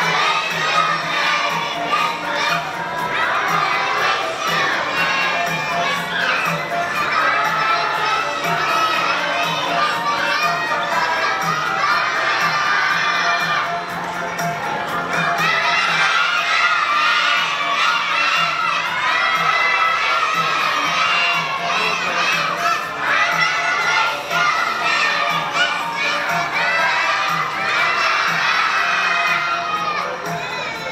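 A large group of preschool children singing loudly together, close to shouting, with a short lull about halfway through.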